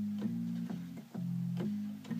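Organ-voiced keyboard playing a repeating low riff, sustained notes changing about every half second with a short click at each change.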